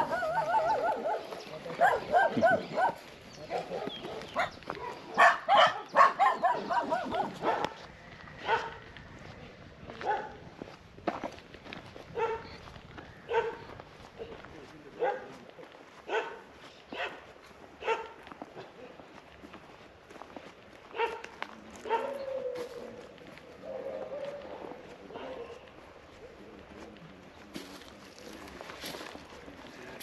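Dogs barking and yipping: a quick flurry of barks over the first several seconds, then single barks about once a second that thin out toward the end.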